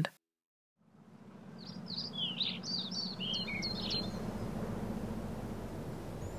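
Countryside ambience fading in after a second of silence: a steady low rumble of outdoor noise, with a bird giving a quick run of short chirps for about two seconds.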